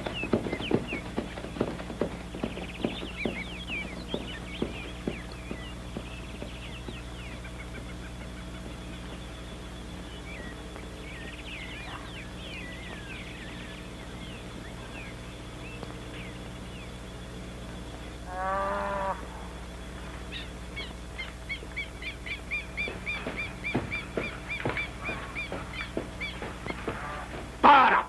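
Outdoor ambience with birds chirping and a run of clicks in the first few seconds. About two-thirds of the way through comes one louder call lasting under a second, followed by quick, repeated high chirping, all over a steady low hum.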